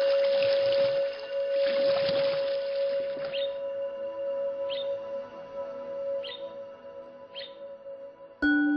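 Ambient meditation music: a held drone tone with a soft hissing wash over it for about the first three seconds. Then four short birdlike chirps sound over the drone, spaced a second or so apart.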